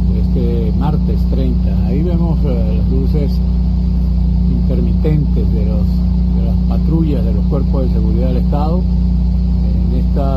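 A man speaking Spanish, narrating from a phone video, over a steady low drone.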